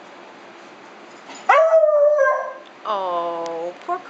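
A dog giving two drawn-out, howling vocal calls while the two dogs are at play. The first is higher and lasts about a second; the second comes about half a second later and is lower, dropping slightly in pitch.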